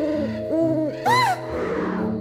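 Cartoon background music with owl-like hoots laid over it. Two low hoots come in the first second, and a louder, higher hoot that rises and falls comes just after a second in.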